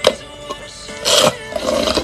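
Background music with steady tones, over which come several short, noisy slurps of a drink being sucked up through a plastic straw, a brief one at the start and longer ones in the second half.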